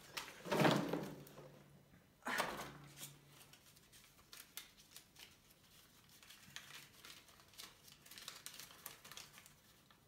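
Paper banknotes rustling and crinkling as a handful of dollar bills is handled and counted. There are two louder rustles in the first few seconds, then a run of small soft crackles.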